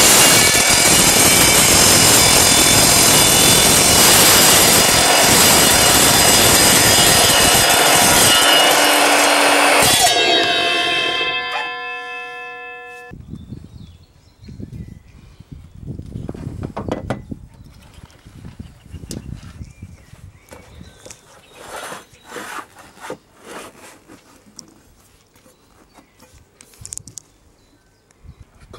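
Sliding mitre saw cutting through steel unistrut channel: a loud, harsh cut for about ten seconds, then the blade winds down with a steady ringing tone that stops abruptly a few seconds later. After that only quieter scattered knocks and rattles.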